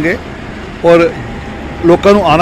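A man speaking a few short words between pauses, over a steady low rumble of road traffic.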